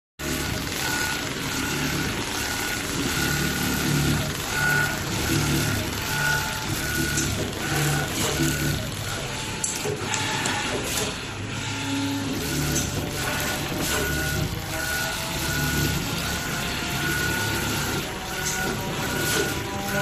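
ZOJE ZJ-M7-GS900H-V2 rotary-head template sewing machine running, its needle stitching continuously through fabric clamped in a template frame as the head travels along the pattern.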